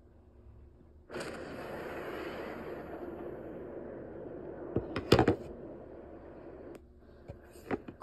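A steady rushing noise that starts suddenly about a second in and cuts off near the end, with a couple of sharp knocks in the middle and two faint clicks after it stops.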